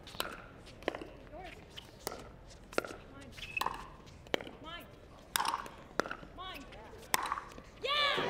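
A pickleball rally: paddles striking the plastic ball in sharp pops, about one every second, with faint voices between the shots.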